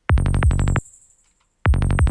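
Electronic synth one-shot retriggered in a fast run of hits, a sequence for hi-tech psytrance, each hit dropping in pitch. One short burst plays, stops for under a second, and starts again near the end.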